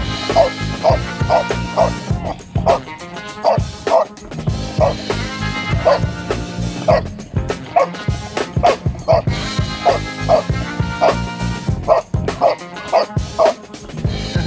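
A dog barking in short, high yips, over and over in quick runs, over background music.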